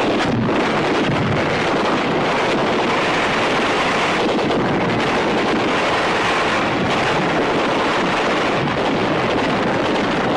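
Steady, loud rushing noise with no breaks and no distinct shots.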